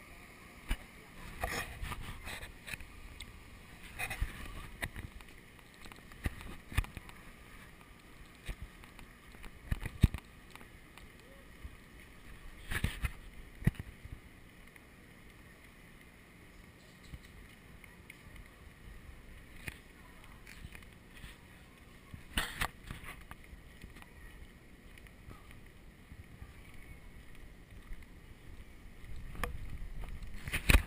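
Handling noise from a moving action camera: irregular knocks and rubbing on the camera body over a low, rumbling wind-like noise, with the loudest knocks a few seconds apart.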